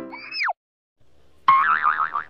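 Cartoon sound effects: a short whistle falling steeply in pitch at the start, then about a second and a half in a warbling tone that wobbles rapidly up and down.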